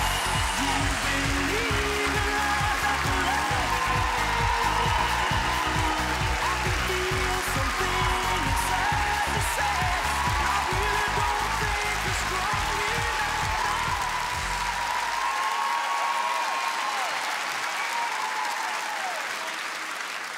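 Studio audience applauding over walk-on music with a strong beat and bassline. The music stops about fifteen seconds in while the applause goes on, tailing off.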